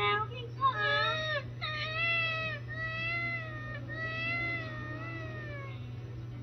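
A newborn baby crying: a short cry about a second in, then several long wavering wails that stop shortly before the end.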